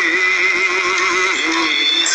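A singer holding one long sung note that wavers quickly in pitch, with a processed, synthetic-sounding voice, breaking off shortly before the end.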